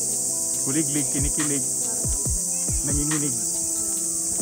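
Steady, high-pitched chorus of cicadas, with background music over it: sustained notes, a melody line and drum beats that drop in pitch.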